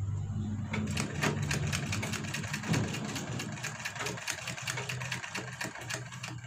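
Domestic sewing machine stitching fabric: after a low hum in the first second, a fast, even run of needle strokes starts and keeps going.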